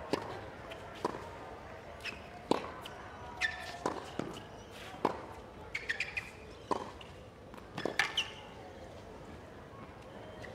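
Tennis rally on a hard court: sharp pops of racket strikes and ball bounces, about one every half-second to second, with a few short shoe squeaks, ending at about eight seconds. A faint crowd murmur runs underneath.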